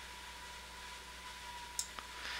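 Quiet recording noise floor: steady hiss and low mains hum with a faint steady high whine, and one short click near the end.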